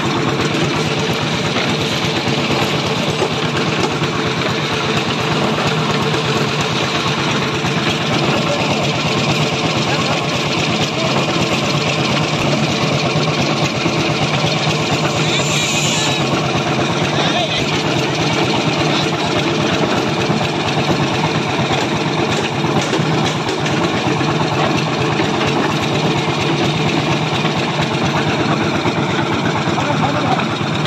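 Concrete mixer running steadily with an even engine drone.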